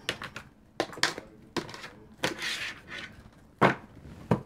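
Tarot cards being gathered up and shuffled on a wooden tabletop: a string of sharp card clacks and taps, a brief swishing shuffle midway, and the loudest knock a little before the end as the deck is squared.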